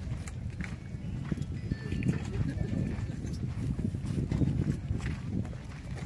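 Background voices of people talking outdoors over a continuous low rumble.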